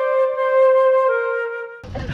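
Background music alone: a flute holding a long note that steps down slightly about a second in, with no other sound under it. It breaks off just before the end as voices return.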